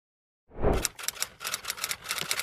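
Typewriter typing sound effect: a low thump about half a second in, then a quick run of key clacks, about six a second.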